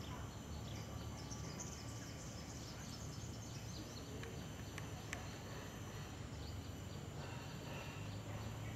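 Outdoor ambience: a steady high-pitched insect drone with a flurry of short bird chirps in the first half, over a low steady hum.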